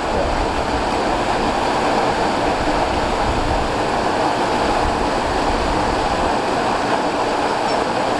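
Waterfall pouring into its plunge pool: a loud, steady rush of falling water.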